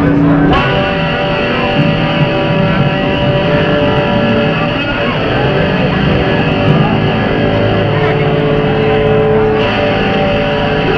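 Live garage-punk band playing loud, heavily distorted electric guitars, with notes held and ringing for several seconds over a dense noisy wash.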